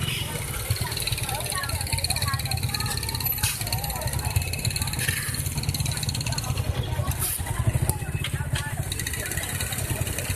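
Motorcycle engines idling: a steady, pulsing low rumble under the voices of people talking.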